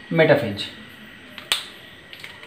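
A brief spoken word, then a single sharp click about a second and a half in, with a fainter tick just before it.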